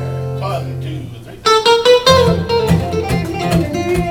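A held guitar chord rings for about a second, then about a second and a half in a country song's intro starts: Telecaster-style electric guitar picking a lead line with bent notes over a strummed acoustic guitar.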